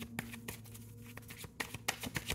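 Tarot cards being handled and shuffled: a scattered series of light, quick clicks of card against card, over a faint steady low hum.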